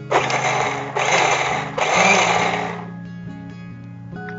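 Electric mixer-grinder jar run in three short pulses, one straight after another, grinding soaked lentils with water into a coarse batter, with the motor and blades dying away near the end. Background music with sustained tones plays underneath.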